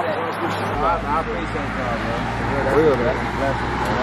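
Voices of several people talking indistinctly, over a steady low rumble that sets in about a second in.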